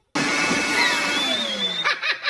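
A loud rush of blown air blasting white foam out of a black pipe, with whistling and sliding pitched tones running through it. It starts abruptly and cuts off sharply near the end.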